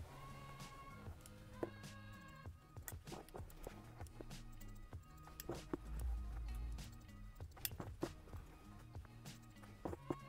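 Quiet background music with low held notes, with faint sharp snips of haircutting shears now and then and a brief low rumble about six seconds in.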